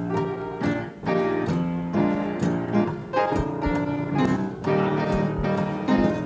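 Church musicians playing the instrumental accompaniment to a gospel chorus, a run of sustained chords that change every half second to a second.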